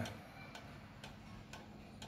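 Seikosha 14-day mechanical pendulum wall clock ticking steadily, faint, about two ticks a second.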